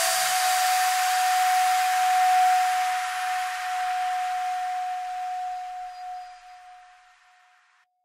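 Outro of an electronic dance track: one steady high synth note held over a hissing noise wash, the beat and bass gone, the whole fading out to silence near the end.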